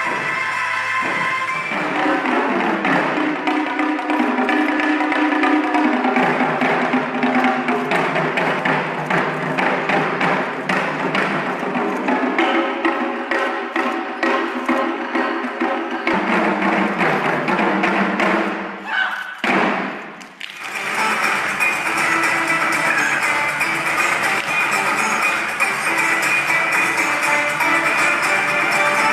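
Drum ensemble beating large barrel drums with sticks: fast, dense drumming with music playing along. About 20 seconds in, the drumming breaks off, and after a short dip other music with a steady melody begins.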